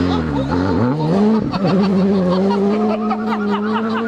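R5 rally car's turbocharged four-cylinder engine under hard throttle on a gravel stage. Its pitch dips and climbs through the first second and a half, then holds a steady high note as the car drives away.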